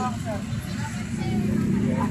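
Low steady rumble of street traffic with people talking in the background.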